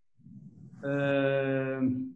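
A man's drawn-out hesitation sound, 'uhh', held on one steady pitch for about a second.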